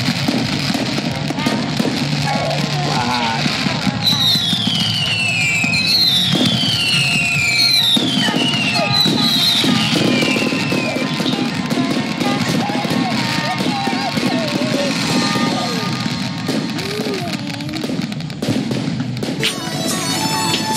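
Fireworks crackling and popping mixed with music. Four falling whistles come one after another between about four and eleven seconds in.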